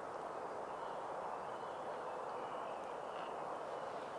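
Quiet woodland ambience: a steady low hush with faint, thin bird calls in the middle.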